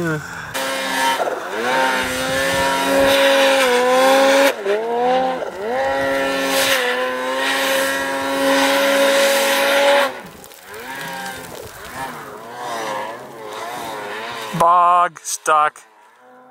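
Snowmobile engine running at high revs while the sled struggles in deep powder snow, holding a steady pitch with two brief dips about four and five seconds in. It drops to a lower, wavering level about ten seconds in, and a short, loud wavering burst comes near the end.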